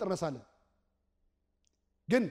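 A man preaching in Amharic through a microphone; his phrase ends about half a second in, followed by a pause of near silence with one faint tick near the end.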